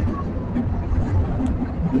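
Amusement-ride car rolling along its track, a steady low rumble.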